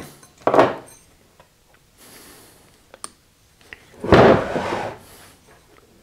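A metal rotary table with a chuck on it is handled and tipped up onto its side on a wooden workbench. There are a few faint metal clicks, then a loud scraping knock about four seconds in.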